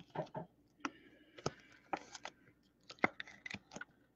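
Trading cards and small plastic card bags being handled: a quiet, irregular string of light clicks and crinkles, about a dozen short taps over the four seconds.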